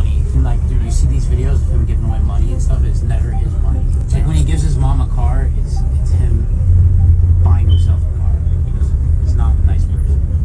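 Men talking aboard a motorboat over a steady low rumble from the boat and wind, which swells for a second or so about seven seconds in.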